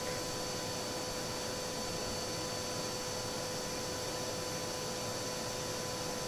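Vacuum cleaner running steadily: an even hum with a steady whine over a hiss.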